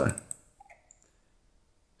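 A few faint computer-mouse clicks, about half a second to a second in.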